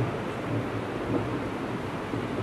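Steady hiss and low rumble from an open handheld microphone on a public-address system, held to the speaker's mouth between phrases.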